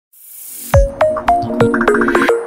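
Electronic intro jingle for a news bulletin. A rising whoosh is followed by a run of about five sharp synth hits, roughly three a second, over a low held chord.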